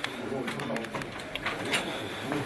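Men's voices muttering over one another, with a few sharp knocks and shuffling as bodies jostle in a doorway.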